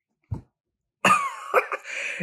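After a near-silent pause broken by one faint tap, a man makes a short, breathy vocal sound about a second in, with a falling pitch.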